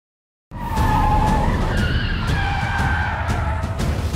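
Car tires squealing in a long skid over a low rumble, starting about half a second in.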